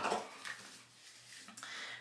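Quiet room tone with faint handling noise as a small cosmetics jar is picked up, a little louder near the end.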